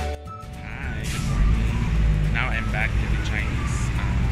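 City street ambience: a steady low rumble of traffic that builds over the first second or so, with brief wavering voice-like calls around the middle.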